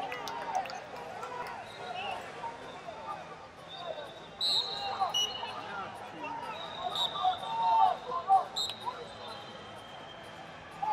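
Wrestling-arena ambience: many voices of coaches and spectators shouting across a large hall, with short, high referee whistle blasts a few times in the second half as the bout gets under way.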